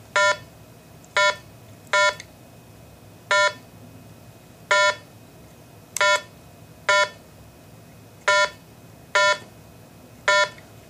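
RATH SmartPhone elevator emergency phone beeping once for each key pressed on its ribbon keypad as an 11-digit site ID is entered. Nine short, identical beeps come at an uneven pace, about one a second.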